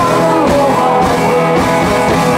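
Live rock band playing loud and steady: electric guitars, bass and drums, with a male lead vocal sung over them.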